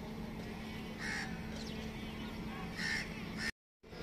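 A bird calling twice, about two seconds apart, over a steady outdoor background with a low hum. The sound drops out completely for a moment near the end.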